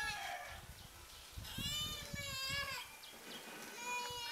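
Farmyard animal calls: a drawn-out call that rises and falls in pitch about a second and a half in, lasting about a second, with another call starting near the end.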